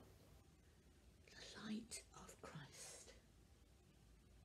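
Soft whispering from a woman's voice, starting about a second in and lasting about two seconds.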